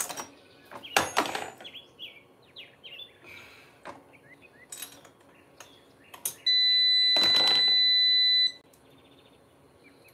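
Knocks and clatter of tools and parts being handled, the loudest about a second in, then a loud, steady, high-pitched electronic beep lasting about two seconds that cuts off suddenly. Birds chirp faintly throughout.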